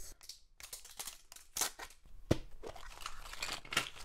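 Wrapper being torn and peeled off a plastic toy capsule ball, with crinkling and a few sharp plastic clicks as the capsule is opened.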